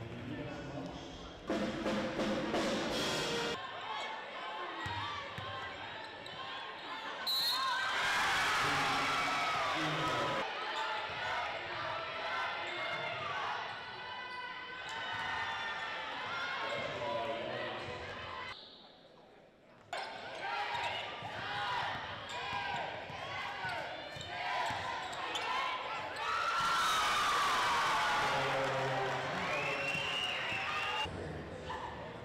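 Basketball game sound in a gym: a ball bouncing on the hardwood court, mixed with voices from the players and the stands.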